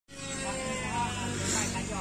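Brief talk over a steady mechanical hum made of several held tones, one of them sinking slightly in pitch.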